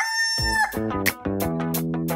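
A rooster's crow, a long held call, ends in the first second, overlapped from about half a second in by music with a steady beat and bass notes.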